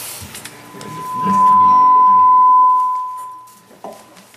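A loud, steady high-pitched tone that swells in about a second in, holds for about two seconds and then fades away, typical of PA microphone feedback ringing. A few faint plucked string notes sound beneath it.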